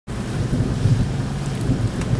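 A steady low rumble under a wind-like hiss, starting abruptly.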